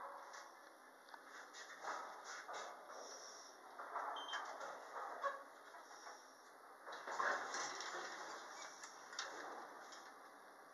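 Traction elevator car at a landing, its sliding doors working amid irregular knocks and rustles inside the car.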